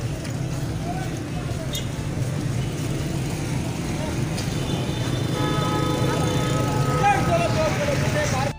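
Busy market street: a constant low rumble of motorcycle and traffic engines under scattered crowd voices. In the second half a held, multi-note steady tone sounds for about two and a half seconds.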